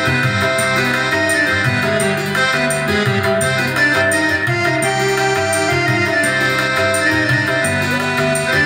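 Korg keyboard playing an instrumental passage, a melodic line with chords over a steady beat.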